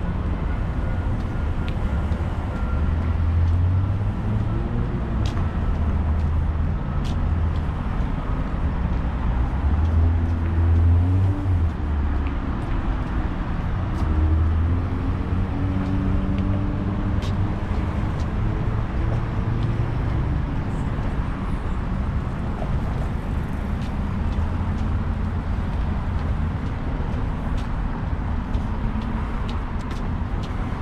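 Urban road traffic passing close by: car and bus engines rumbling past in waves, swelling a few seconds in and again around ten to fifteen seconds in over a steady background of traffic noise. A faint high tone falls slowly in pitch over the first few seconds.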